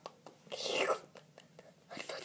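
A girl's breathy whisper about half a second in, lasting about half a second, with a few faint clicks around it.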